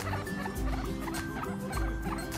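A guinea pig vocalising in short, repeated calls while being scratched under the chin, over background music with a steady beat.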